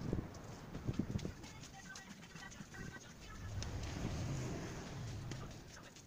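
Handling noise from small plastic cups being picked up off a snowy ledge: a few quick knocks and bumps in the first second, then low rumbling as they are carried.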